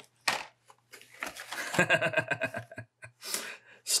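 A man chuckling for about a second and a half, with short rustles of a carded blister-packed toy car being picked up just after the start and near the end.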